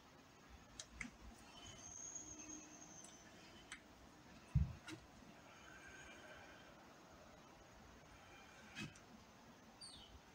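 Faint room tone with a few light clicks scattered through it and one louder soft thump about halfway through.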